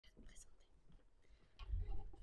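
Faint whispering near a lectern microphone. About one and a half seconds in, a low rumble of handling noise comes in as the microphone or lectern is touched.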